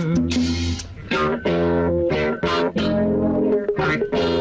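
Instrumental break in a 1980s Tamil film song, with no singing: a run of guitar notes over a strong bass line, with a brief dip about a second in.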